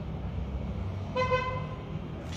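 A car horn gives one short toot a little over a second in, over a steady low rumble of street traffic.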